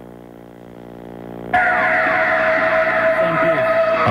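A faint steady hum, then about a second and a half in, videotape audio cuts in abruptly as playback resumes after fast-forwarding: a loud steady tone over a wash of noise.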